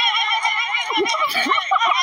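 A long, high cry that wavers in a fast trill. It comes from an animated cartoon's soundtrack, with a few low swooping sounds about a second in.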